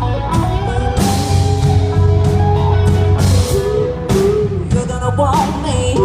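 Live country-rock band playing: drum kit, bass, and electric and acoustic guitars under a held melody line that bends in pitch near the end.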